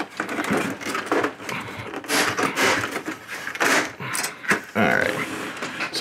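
Hands prying at the plastic control-panel trim of a Canon Pixma MG2520 printer's scanner housing: irregular plastic scrapes, creaks and clicks.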